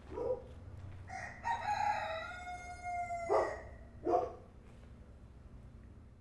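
A rooster crowing once, a long call of about two seconds that holds and then falls slightly at its end, with a few short, sharp sounds before and after it.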